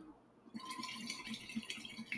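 Water bubbling in a glass bong as smoke is drawn through it: a quick run of small gurgles starting about half a second in.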